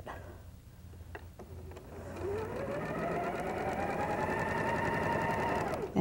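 Electric sewing machine stitching a seam: a few faint clicks, then about two seconds in the motor starts, rises in pitch to a steady run and stops just before the end.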